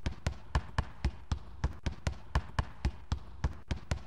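Lato-lato clackers knocking together in a steady rhythm, about four sharp knocks a second.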